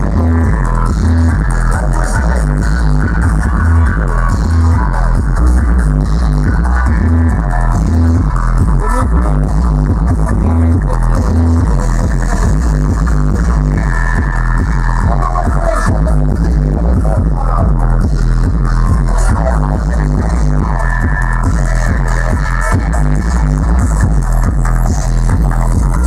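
Loud music played through a street sound system, with a heavy bass line pulsing steadily under it.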